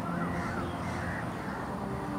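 Crows cawing, a few short calls in the first second or so, over a faint steady low hum.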